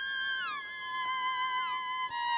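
Electric violin playing sustained high notes, two or more sounding at once, with smooth slides down between pitches.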